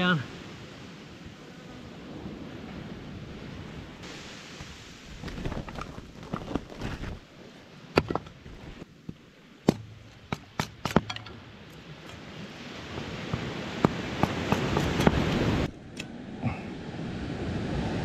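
Split firewood pieces knocking against each other in a run of sharp separate clacks as they are stacked into a small fire, over a steady noise of surf and wind.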